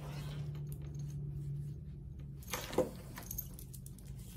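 Faint handling noises of foam craft pieces and a plastic glue bottle, with small clicks and rustles, over a steady low hum that fades about halfway through.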